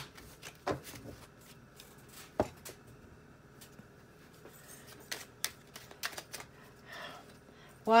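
Tarot cards being shuffled and drawn by hand: a scatter of light, irregular snaps and taps of card on card.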